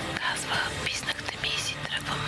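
People talking in whispers, with soft background music underneath.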